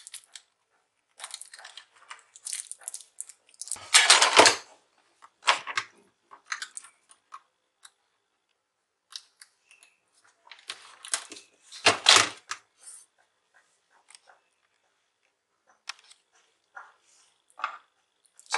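Sticky tape being peeled off a laptop power-switch circuit board and handled: irregular crackling and tearing in short bursts, the loudest about four seconds in and again about twelve seconds in.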